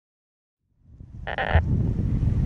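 Silence, then from about a second in a low rumble of wind on the microphone outdoors, with one short, bleat-like voice sound about a second and a half in.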